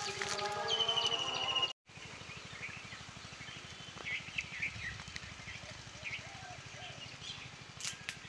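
Birds chirping now and then over a steady outdoor background. For the first couple of seconds a louder sound with several held tones plays, and it cuts off suddenly.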